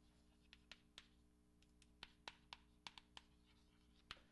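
Chalk writing on a blackboard: a dozen or so faint, irregular taps and short scratches as the chalk strikes and drags across the board.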